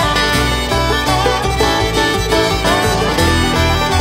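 A bluegrass band playing an instrumental break in a live recording. A sliding, wavering lead melody runs over picked banjo and guitar and a moving bass line.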